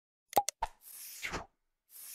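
Animated title-card sound effects: three quick pops about a third of a second in, then a short airy whoosh, with a second whoosh starting near the end.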